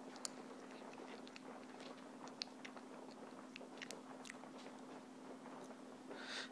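Faint steady hum with scattered, irregular faint ticks and clicks from a Dell Inspiron 8100 laptop booting into Windows XP.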